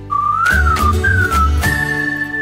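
Short whistled jingle over light backing music with a bass beat: a few notes that glide up and down, ending on one long held higher note.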